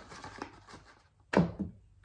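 Faint rustling of a foil-lined cookie pouch as cookies are tipped out into a hand, with one short sharp sound a little past halfway.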